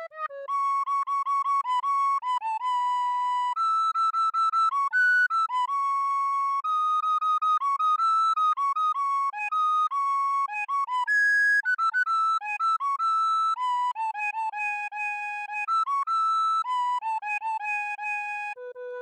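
A recorder plays a melody alone, one note at a time, mostly in its upper register. Repeated notes are tongued separately with short breaks between them.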